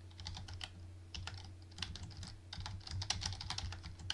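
Typing on a computer keyboard: several quick runs of keystrokes with short pauses between them, over a low steady hum.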